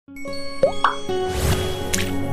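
Channel logo intro: sustained synth music with sound effects laid over it. Two short rising blips come in quick succession, then a swelling whoosh, and a sharp bright hit near the end as the icons appear.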